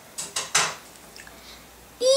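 Hands brushing and tapping the clear plastic sleeve pages of a trading-card album: three short rustles within the first second, the last one the longest and loudest.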